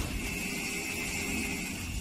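The tail of a cinematic intro sound effect: a low rumble under a steady high ringing tone, slowly fading.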